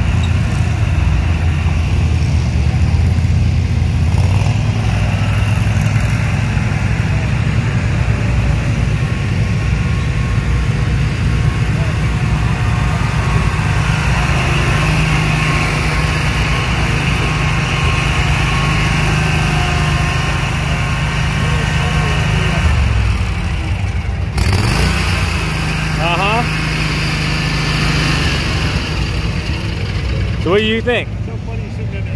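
Commercial lawn mower engines running steadily, a low hum with a brief break about 24 seconds in.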